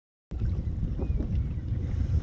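Wind buffeting the microphone out on open water, a heavy uneven rumble that cuts in suddenly a moment in after silence.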